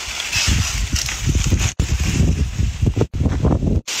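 Dry stalks rustling and crackling as they are handled for stove fuel, with wind buffeting the microphone; the sound breaks off abruptly a few times.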